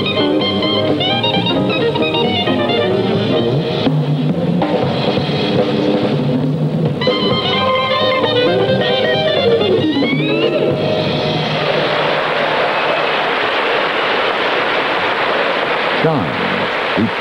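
Small Dixieland jazz group of clarinet, guitar, piano, string bass and drums playing the closing bars of a tune, with a quick rising run near the end of the music. About eleven seconds in the music stops and audience applause follows.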